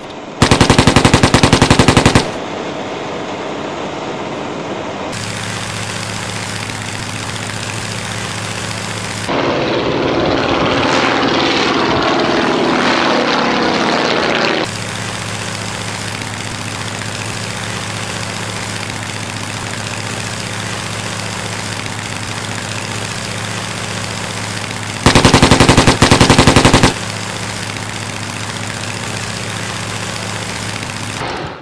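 Propeller aircraft engine running steadily, with two loud bursts of rapid machine-gun fire, one right at the start lasting about two seconds and another about 25 seconds in. In the middle a louder stretch of about five seconds falls in pitch.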